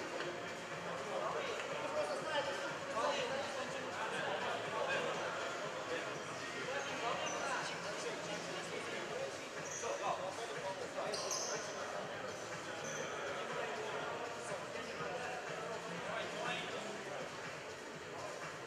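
Indistinct voices of players and spectators echoing around a large sports hall, with a ball thudding on the hardwood court now and then and a brief high squeak about eleven seconds in.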